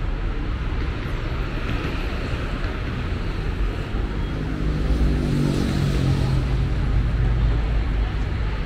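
City street traffic: a steady low rumble of passing cars, with one vehicle's engine hum coming up louder about halfway through and easing off near the end.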